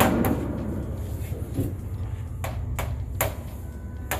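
Game pieces knocking on a tabletop board game: a sharp knock at the start, then three quick clacks about two and a half to three seconds in, over a steady low hum.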